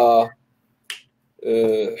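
A man speaking, broken by a pause that holds one short, sharp click about a second in, before his speech resumes.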